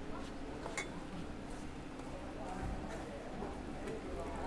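A couple of light clinks, then hot water begins pouring from an enamel kettle into a plastic glass near the end.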